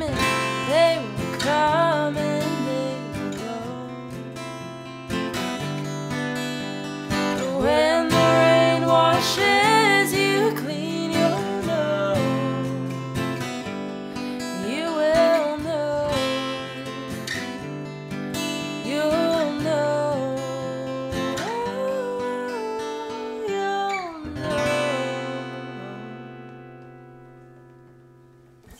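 Acoustic guitar strumming with a woman's singing voice in the closing bars of a song, ending on a final chord that rings out and fades away over the last few seconds.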